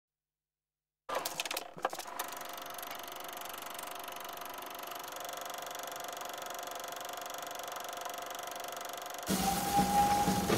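After a second of silence, a few sharp clicks, then a steady mechanical whir with a fine even flutter, the sound of an old film projector running behind a silent-film title card. Near the end a louder sound with a steady high tone cuts in.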